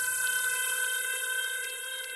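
Held electronic chord at the tail of a podcast's transition jingle: several steady pitches over a hiss, slowly fading.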